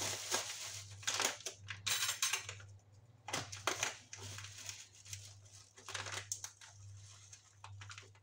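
Plastic bag crinkling and rustling in irregular bursts as a bag of salt is opened to take out a tablespoonful, over a low steady hum.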